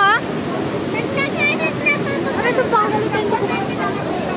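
Steady rush of a shallow mountain stream cascading over rocks, with scattered shouts and voices of people bathing in it.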